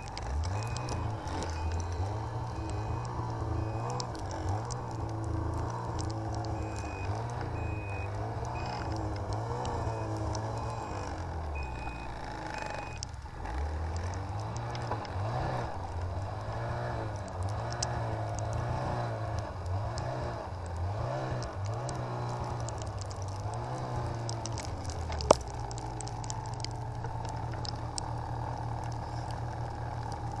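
Snowmobile engine running with the throttle rising and falling over and over as it plows through deep snow, then settling to a steady idle about 25 seconds in, just after a sharp click. A high electronic beep sounds on and off during roughly the first twelve seconds.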